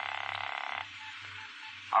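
Telephone buzzer sound effect: a single harsh buzzing ring that cuts off suddenly about a second in, the call ringing through before it is answered.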